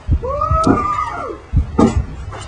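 A single drawn-out cry that rises and then falls in pitch, lasting about a second, over a few dull thumps, with a sharp knock near the end.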